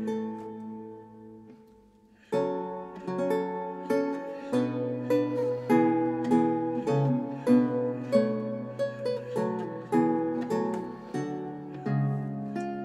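Solo Renaissance lute: a plucked chord rings and fades away, a brief pause, then a new passage of plucked notes and chords begins a little over two seconds in.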